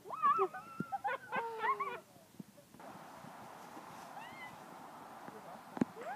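High-pitched shrieks and squeals from girls for about two seconds, then a steady soft hiss, with one sharp pop near the end.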